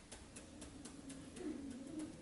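Faint, regular ticking, about four ticks a second, with a low hum that swells briefly about a second and a half in.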